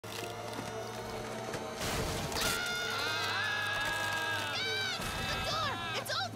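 Cartoon soundtrack music: a low steady drone under held tones, with a brief rushing noise about two seconds in and a sustained high melody line from about halfway through.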